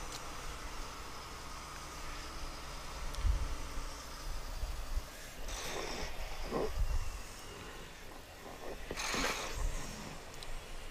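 Inside a Volvo 730 semi truck's cab, the diesel engine runs with a low, steady drone as the truck rolls slowly. Two short breathy bursts come through, about five and a half and nine seconds in.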